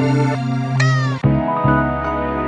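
Boom bap sample loops played back one after another. The first loop ends in a short note that bends downward in pitch, and just over a second in, a new loop of held notes takes over.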